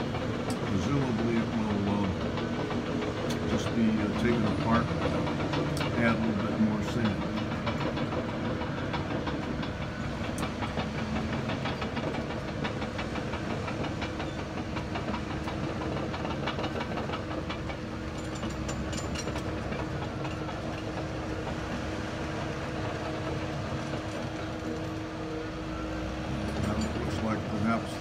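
A steady mechanical hum that holds a few even tones, with faint talking in the first several seconds and again near the end.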